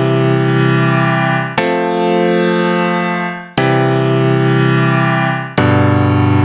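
Virtual piano instrument playing back a MIDI recording of slow chords. A chord is already ringing, then three more are struck about two seconds apart, each held the full length like a whole note and fading gently before the next.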